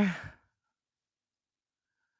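A woman's voice trailing off at the end of a phrase in the first half second, then near silence.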